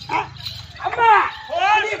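A performer's voice in a few short calls whose pitch swoops up and down, with gaps between them, over a steady low hum.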